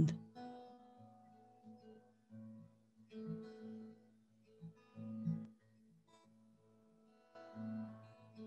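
Acoustic guitar played softly, plucked notes and light chords in short phrases with quiet gaps between them.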